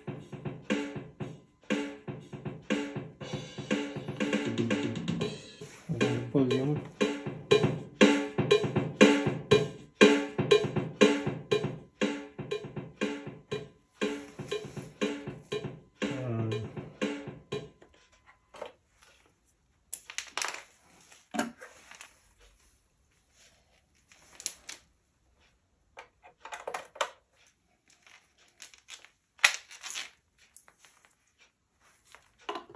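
Boss DR-3 drum machine playing a steady rhythmic drum pattern, which stops about eighteen seconds in; after that only a few scattered clicks and knocks of handling.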